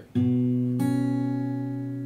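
Steel-string acoustic guitar fingerpicked: a low note plucked on the fifth string, then a higher note added about half a second later, both left ringing and slowly fading.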